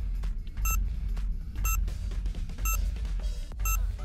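Quiz countdown timer music: a drum beat with heavy bass, and a short, bright tick once a second as the timer counts down from five to one.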